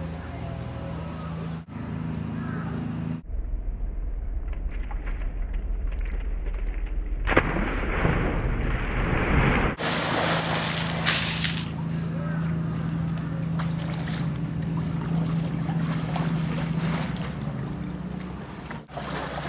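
Water splashing and sloshing in a zoo pool as a young polar bear plunges and paddles, loudest in a stretch from about seven to eleven seconds in. A steady low hum runs underneath.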